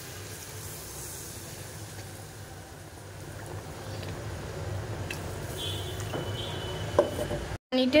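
Fish curry cooking in a wok on the stove, a steady low sizzle and hiss from the spiced liquid with a single sharp click near the end.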